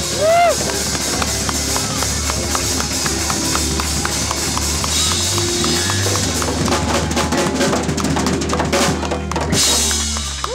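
Live funk band playing: drum kit, electric bass and guitar together. A thick run of drum hits comes in late, and a cymbal crash near the end closes the tune.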